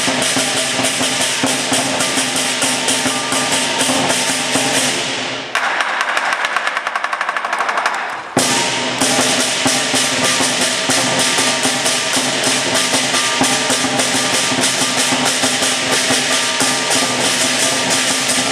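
Lion dance percussion: a Chinese drum with clashing cymbals beating a fast, steady rhythm. About five and a half seconds in, the low drum drops out for a quick roll of higher strikes lasting about three seconds, then the full ensemble crashes back in with a loud hit.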